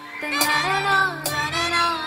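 Live band playing a Tamil film song: a bending high melody over sustained bass and keyboard notes, with percussion hits about half a second and a second and a quarter in.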